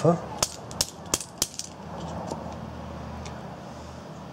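Fire piston struck several times with the flat of the hand, about four sharp pops in quick succession in the first second and a half, each one driving the plunger into the cylinder to heat the air and light a piece of tinder cord in the tip.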